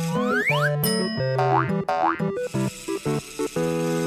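Cartoon background music with comic sound effects laid over it: a long rising pitch glide in the first second, then two shorter swooping glides about one and a half and two seconds in.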